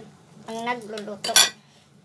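A single sharp metallic clink of metal kitchenware, ringing briefly, about a second and a half in.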